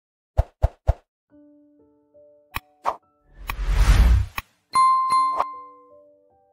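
Channel-intro sound effects: three quick pops, soft held tones and a couple of clicks, then a whoosh that swells with a low rumble in the middle. A bright, ringing ding follows, fading out under two more clicks.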